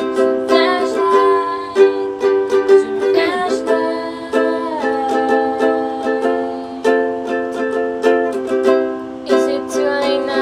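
Ukulele strummed steadily through a repeating four-chord progression, with several young female voices singing along.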